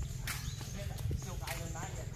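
Faint voices of people talking some way off, over a steady low rumble.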